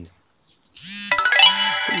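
A bright chime rings about a second in, several clear tones held together and ringing on for about a second.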